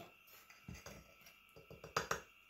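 Quiet, with faint music in the background and a few soft clicks of a spoon at a plastic sugar container; a sharper click comes near the end.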